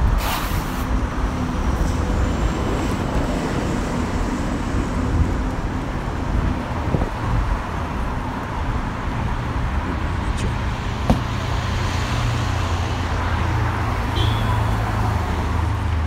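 City street traffic: a steady rumble of cars running and passing, with a lower engine drone growing stronger in the last few seconds and a sharp click about eleven seconds in.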